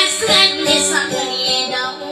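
Dayunday music: a high voice singing over a plucked guitar accompaniment.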